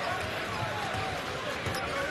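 A basketball being dribbled on a hardwood court: repeated low bounces, over the murmur of an arena crowd.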